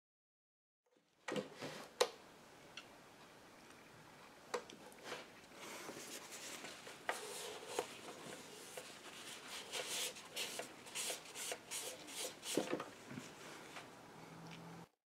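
A small hammer tapping a metal T-nut into a drilled hole in a plywood panel: a few sharp taps, the loudest about two seconds in. Then a tissue rubbing and wiping over the wood in quick strokes, with an occasional knock.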